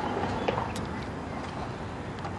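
Steady low background rumble of a car's surroundings, with a couple of faint clicks about half a second in.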